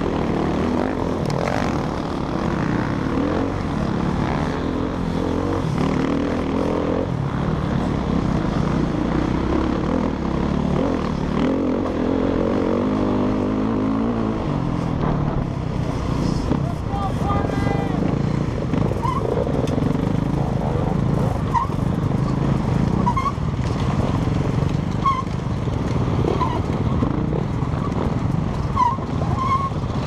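Dirt bike engine running hard over rough ground, its pitch rising and falling with the throttle, heard close up from the bike itself, with other dirt bikes running around it.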